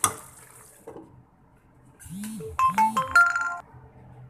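A metal spoon clinks once against the steel cooking pot. About two seconds later a short electronic jingle plays: two low swooping tones, then a few higher beeping notes, like a phone ringtone.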